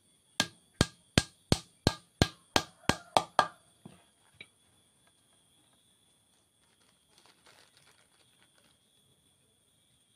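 Hammer striking a thin wooden strip resting on a wooden block: about ten quick, sharp strikes at roughly three a second, then two lighter taps. A faint scuffle of wood pieces being handled follows a few seconds later.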